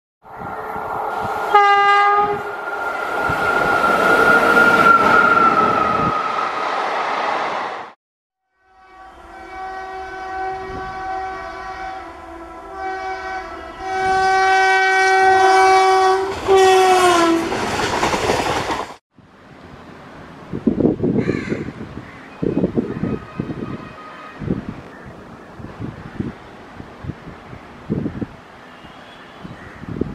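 Locomotive air horn sounding over a passing train for several seconds, then, after a brief cut, more horn blasts that slide down in pitch as the train goes by. These are followed by the irregular clatter of wheels over rail joints.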